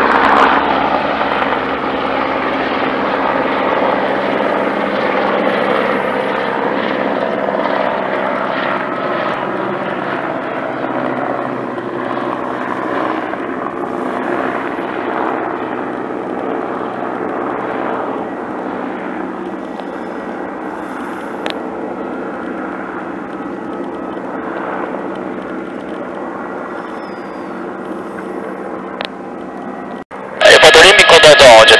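Aerospatiale AS350B2 Ecureuil helicopter, its Turbomeca Arriel turbine and rotor running at takeoff power as it lifts off and climbs away. A steady engine-and-rotor sound that fades slowly as the helicopter departs.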